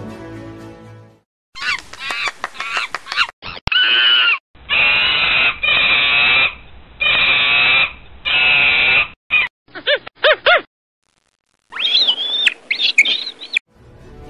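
Monkey calls: a run of high-pitched screeching and chattering calls, some rising and falling in pitch. They come in several separate bursts that start and stop abruptly, with short silences between.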